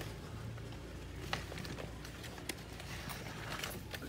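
Rottweiler puppies' paws tapping on a stone-tiled floor: a few light, scattered clicks over a low steady hum.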